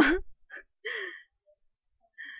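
A voice finishing a spoken word, then a short breathy vocal sound, like a gasp or soft laugh, about a second in.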